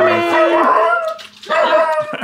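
A young puppy whining in high-pitched, drawn-out cries that bend up and down in pitch, in two bouts with a short pause a little past a second in.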